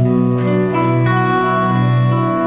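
Live band playing an instrumental passage: sustained chords on keyboard and guitar that change every second or so over a steady low bass note.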